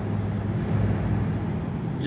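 A steady low hum over a constant background noise, with no clear event.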